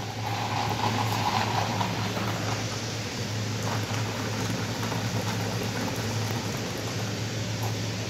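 Carbonated water running from a soda fountain tap into a paper cup, fizzing with a steady hiss, over a constant low hum.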